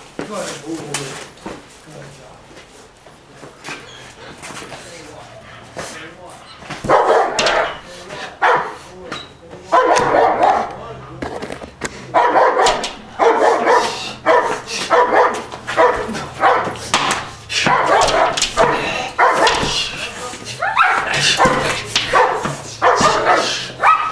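German shepherd barking aggressively at a man in a bite suit from behind a closed sliding glass door: a protection-trained dog's threat barking. The barks come in repeated volleys, starting about seven seconds in.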